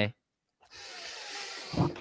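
A pause in two men's talk: speech stops just after the start, a brief dead silence follows, then about a second of faint hiss before a man starts speaking again near the end.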